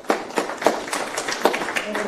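Audience applauding, many separate hand claps in a ragged patter.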